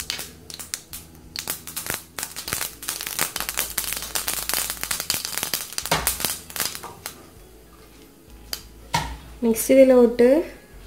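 Mustard seeds popping in hot oil in a small metal kadai: a dense, rapid crackle of pops that thins out to a few scattered pops after about seven seconds.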